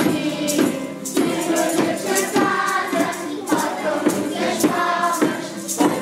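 A group of young children singing Janeiras, traditional Portuguese New Year carols, together, with a steady jingling percussion beat kept in time.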